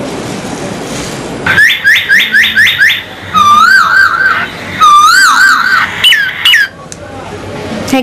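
A steady hiss, then a run of quick high falling chirps, about five a second, followed by two warbling trills and a couple of last chirps that stop about a second before the end.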